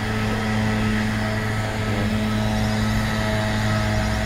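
Leaf blower's small engine running at a steady speed, a constant drone.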